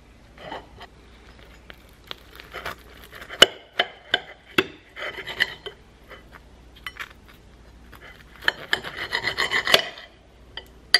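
A table knife sawing through toasted bread in an egg-and-avocado sandwich on a plate: rasping strokes with sharp clicks of the blade, the sharpest click about three and a half seconds in and a quick run of strokes near the end.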